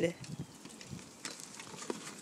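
Faint crackling and rustling of a cardboard 12-pack soda box as a puppy moves with its head stuck inside it, with a few light taps and scrapes.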